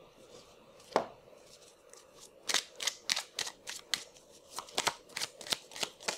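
A deck of oracle cards being shuffled and handled by hand: a single sharp click, then from about halfway through a quick run of about a dozen sharp card snaps and taps at uneven spacing as cards are drawn and dealt onto the table.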